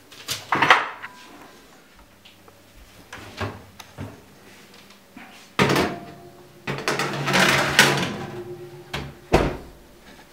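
A metal baking tray being slid into a wall oven, with a scraping stretch a couple of seconds long. Knocks and clatter of handling come before it, and the oven door shuts with a thump near the end.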